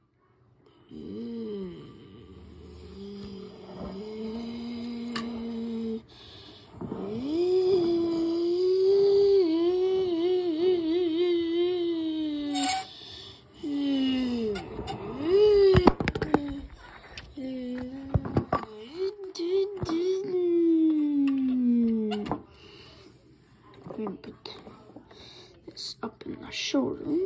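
A child making car engine noises with his voice: long wavering hums that rise and fall in pitch like an engine revving, ending in a long falling glide. A few sharp knocks of the die-cast toy cars on the table, the loudest about two-thirds of the way through.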